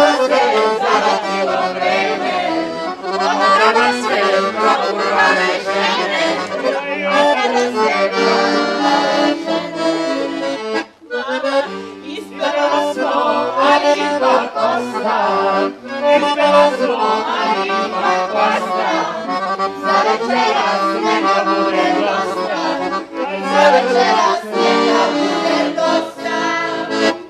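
Hohner piano accordion playing a lively folk tune while a group of young men and women sing bećarac-style songs along with it. The music breaks off briefly about eleven seconds in, then resumes.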